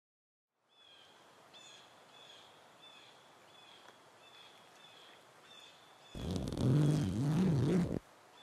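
A small bird repeats a short chirp about every two-thirds of a second over faint outdoor background. About six seconds in, a person's loud, drawn-out groan cuts in, its pitch wavering up and down.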